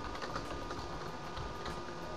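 Computer keyboard being typed on: a handful of separate keystrokes.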